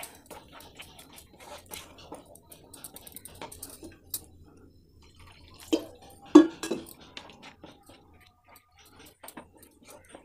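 Wooden spatula scraping and tapping in a nonstick pan as a thick ground masala paste is stirred and cooked down, with scattered soft wet clicks. Two louder knocks come a little past halfway.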